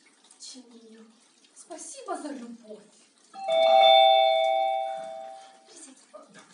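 A doorbell rings about three seconds in: a steady two-tone chime, the loudest sound here, that fades out over about two and a half seconds.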